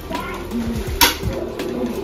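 Quiet room murmur with one sharp knock about a second in.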